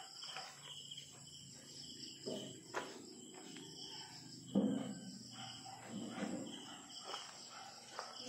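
Faint, steady chirring of insects, with a few soft low sounds and a single click in between.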